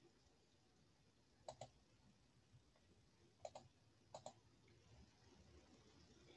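Near silence broken by three faint double clicks, one about a second and a half in and two more around three and a half and four seconds in: a computer mouse button being clicked.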